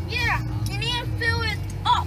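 Short high-pitched vocal sounds, bending in pitch, with no clear words, over the steady low hum of a car's idling engine.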